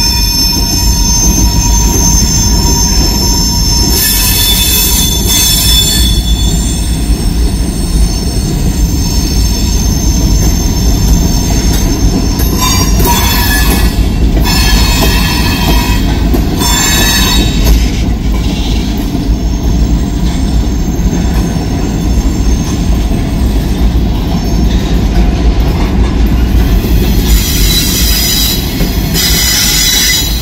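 Loaded freight train's covered hopper cars rolling past close by: a steady heavy rumble of steel wheels on rail, with a high wheel squeal in the first few seconds and several short bursts of high-pitched screeching spread through the pass.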